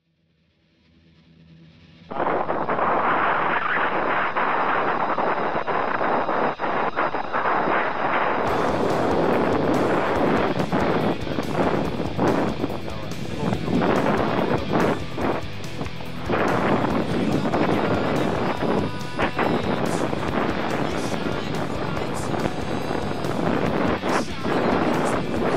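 Strong wind blasting across the microphone of a camera held by a cyclist riding on an open road, loud enough to drown out his speech. The noise comes in suddenly about two seconds in.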